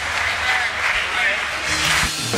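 Voices of a church congregation and choir calling out over one another, several at once, with no music playing.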